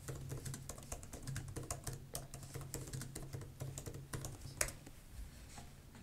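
Computer keyboard typing, faint: a quick run of keystrokes, with one louder stroke about four and a half seconds in before the clicks stop.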